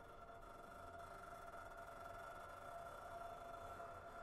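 Faint sustained ringing from a piano sounded without the keys, several held pitches together, swelling slightly in loudness.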